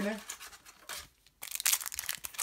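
Foil wrapper of a trading-card booster pack crinkling in the hand: a few light rustles, then a dense burst of crinkling in the last half second or so.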